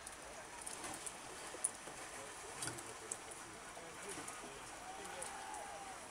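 Quiet ambience with faint, distant voices and a few light clicks.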